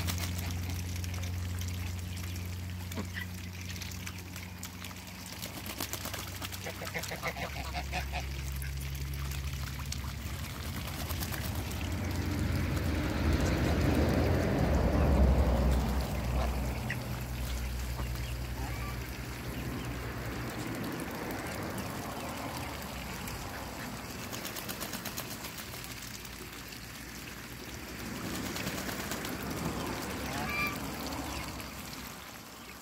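Mixed flock of domestic ducks and geese quacking and honking at intervals as they bathe and drink in a puddle, with a low steady hum underneath that swells about halfway through.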